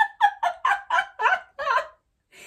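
A woman laughing heartily in a quick run of about eight ha-ha bursts, four or five a second, trailing off near the end. It is deliberate, self-prompted laughter in a laughter exercise.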